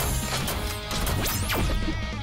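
Cartoon gear-and-weapon assembly sound effects: a string of sharp mechanical clanks and impacts with a rising swish, over background music.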